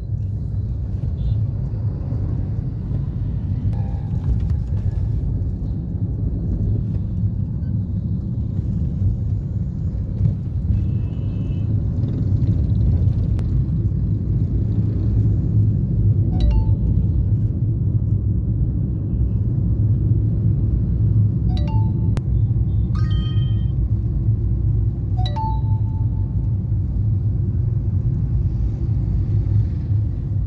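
Steady low rumble of a moving car, heard from inside the cabin. In the second half come four short horn beeps from nearby traffic, one of them a little longer.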